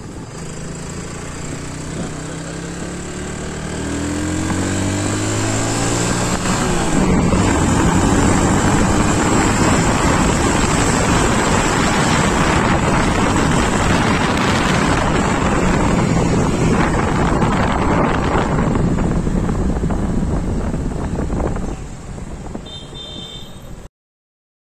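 Yamaha automatic scooter engine pulling away, its pitch rising steadily over the first several seconds, then a loud, even rush of engine and wind noise at riding speed that eases off a couple of seconds before the end.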